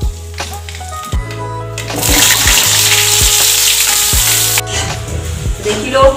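Hot oil in a steel kadhai sizzling loudly as food is dropped into it, starting about two seconds in and cutting off suddenly after about two and a half seconds, over background music with a steady beat.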